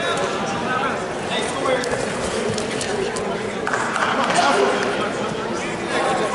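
Spectators' voices and chatter echoing in a gymnasium, with scattered shouts and no single clear speaker.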